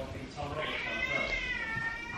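A pet's long, high-pitched drawn-out cry that starts about half a second in and rises and falls gently.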